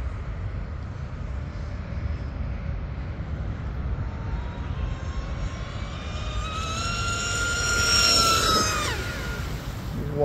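High-pitched electric whine of the Cozy RC M950 speedboat's RocketRC 4092 1520kV brushless motor and prop at full speed, growing louder as the boat approaches over a steady low rumble. The whine peaks about eight seconds in, then its pitch drops sharply as the boat passes.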